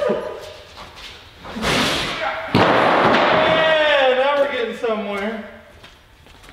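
A heavy steel stair section thrown down onto the floor, landing with a loud crash about two and a half seconds in, followed at once by a loud shout or whoop lasting a couple of seconds.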